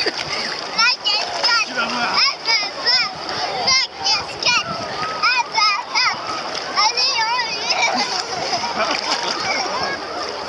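Water splashing as a man and a child play in shallow sea water, with a child's excited high-pitched squeals and voices throughout.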